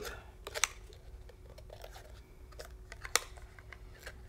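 A few light clicks and taps, the sharpest just after three seconds, over a faint steady hum.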